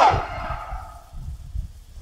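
A man's chanted voice ends a drawn-out vowel that glides down in pitch just after the start and dies away with an echo, followed by a lull of low rumble.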